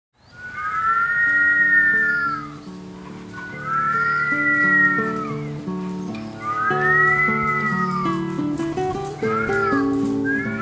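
People whistling together in two parallel pitches, three long rising-then-falling glides followed by shorter, quicker ones near the end, over background music with low sustained notes.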